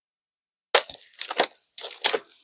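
Thin Bible pages being flipped: a few sharp, crackly paper rustles, starting just under a second in.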